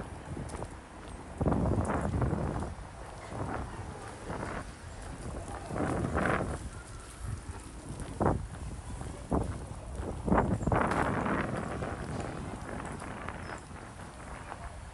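Street ambience heard while walking: irregular bumps and rustles with wind buffeting the microphone, louder in a few gusts about a second and a half in, around the middle, and near the end.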